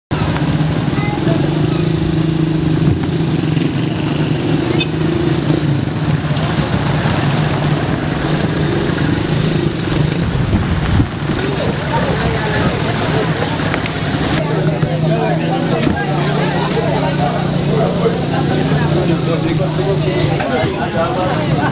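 A vehicle engine running steadily, mixed with people's voices.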